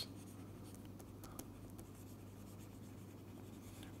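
Faint scratching of a stylus writing on a tablet screen, over a low steady hum.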